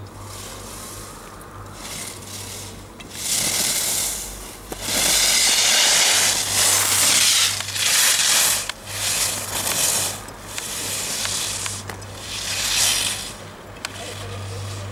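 Alpine skis carving turns on hard-packed snow: the edges scrape and hiss in a surge with each turn, about once a second, louder from about three seconds in.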